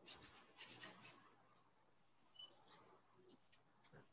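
Faint strokes of a wet pencil brush on cold-press watercolour paper, a few brushing sweeps in the first second or so and a few weaker ones later, otherwise near silence.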